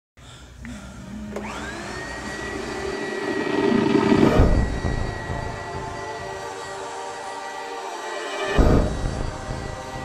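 Horror-trailer sound design: a dark drone under a high tone that glides up about a second in and then holds steady. Two loud swells come in, about four and eight and a half seconds in.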